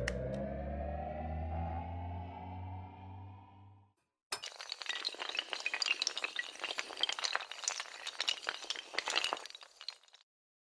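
Animated-logo sound effects: a sustained synth swell of several slowly rising tones over a low hum, fading out about four seconds in. After a brief gap comes a dense, rapid clinking clatter of many small pieces falling, like tiles or glass, which lasts about six seconds and dies away at the end.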